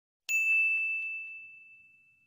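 A bright bell-like ding sound effect, struck once about a quarter second in and ringing out as it fades over about two seconds, with a few faint quick ticks about a quarter second apart under it.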